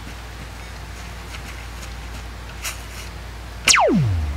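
Cartoon zapping sound effect near the end: a short, loud whistle that falls steeply in pitch from very high to very low. Before it there is a low steady hum with a few faint ticks.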